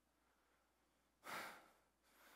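Near silence, then a single audible breath from a man, a short breathy rush lasting about half a second, past the middle.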